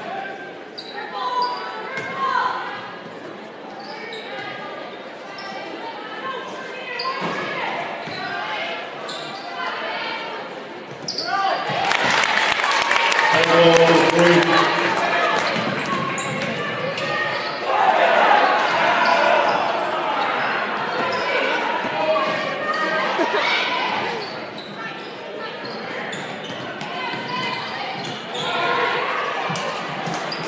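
Basketball game sounds echoing in a large gym: a ball bouncing on the hardwood court and a mix of crowd and player voices, with the crowd noise swelling louder about twelve seconds in.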